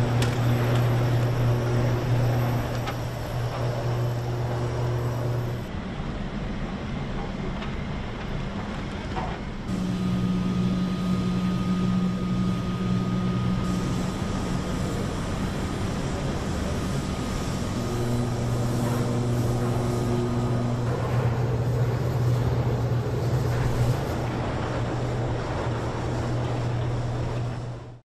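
Steady low hum of heavy machinery at a steel plant, shifting in pitch and level several times, with a thin steady whine for about ten seconds in the middle.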